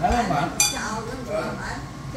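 A single sharp clink of a soup spoon against a ceramic bowl about half a second in, ringing briefly, amid table talk.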